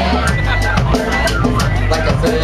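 Live band playing with a steady beat: drum kit and acoustic guitar.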